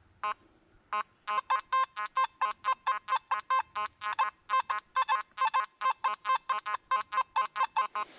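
Nokta Makro Simplex metal detector sounding its target tone: two single beeps, then from about a second in a rapid, even run of short beeps at one steady pitch as the coil works over the spot. It is picking out a coin target lying close to iron.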